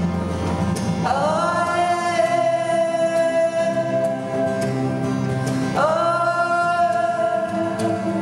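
A woman sings two long held notes, each sliding up into its pitch, over acoustic guitar and electric bass guitar in a live folk performance.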